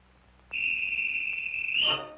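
A single long blast on a small hand-held whistle: one steady high note lasting about a second and a half, rising slightly just before it stops.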